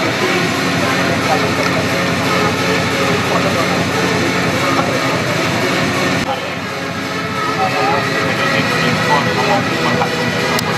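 Voices calling out over a steady, loud droning hum.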